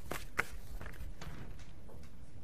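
Irregular light clicks and taps of a computer keyboard and mouse over a steady room hum, the sharpest one about half a second in.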